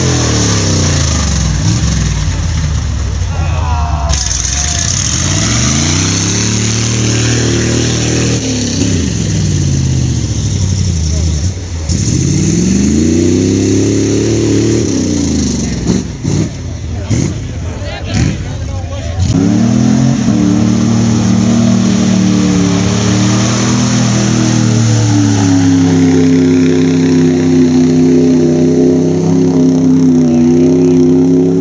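Mud-bog truck engines revving hard through a mud pit, the pitch swinging up and down several times in the first half. After a brief break a little past halfway, an engine revs again with a steadier, slowly climbing pitch.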